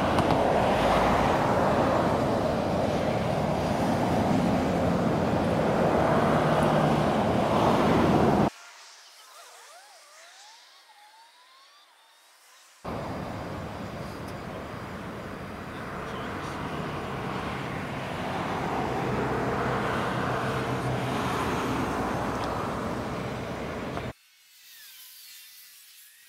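Street recording played back at eight times speed: a dense, garbled hiss of sped-up voices and traffic noise. It drops to near-quiet for about four seconds in the middle, then comes back.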